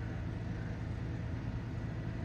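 Steady low hum of a car engine idling, heard from inside the parked car.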